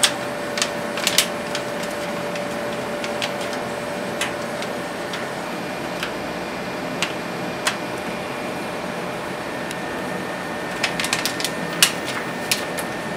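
Film being threaded by hand through a 70mm projector: scattered sharp clicks and snaps of film, sprocket keepers and rollers, with a quick run of clicks near the end, over a steady mechanical hum.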